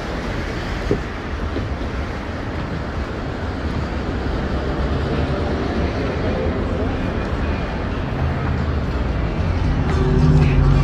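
Steady rumble of street traffic on a busy city boulevard, with faint voices of passers-by mixed in. A deeper engine hum comes in near the end.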